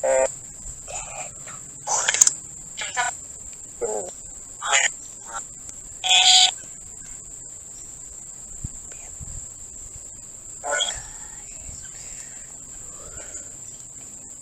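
Spirit box app on a phone sweeping through radio, putting out short clipped fragments of voice and static every second or two, with a longer quiet gap midway. A steady high-pitched cricket trill runs underneath.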